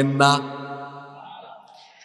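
A man's voice chanting, holding one long steady note on the closing syllable "na" in the sung delivery of a Bangla waz sermon. It fades away gradually over about a second and a half.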